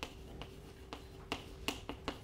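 Chalk writing on a blackboard: about six sharp clicks and taps as the chalk strikes the board, over a faint steady hum.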